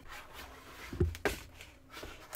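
Mobile Pixels Duex Plus portable monitor's screen panel sliding out of its housing: a soft rubbing slide, with a couple of light knocks about a second in and a click near the end.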